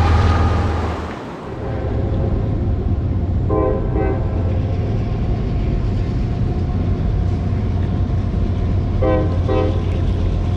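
A train rumbling past steadily, its horn sounding two short blasts about three and a half seconds in and two more near the end.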